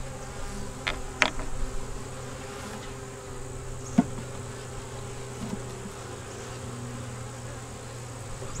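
Honeybees buzzing steadily around an open nuc hive. A few light clicks come about a second in, and a sharper wooden knock about four seconds in as a wooden box rim is set down on the hive.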